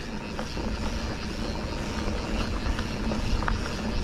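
Mountain bike rolling along a dirt trail: steady tyre and ride noise with deep wind rumble on the microphone and a few faint small clicks and rattles.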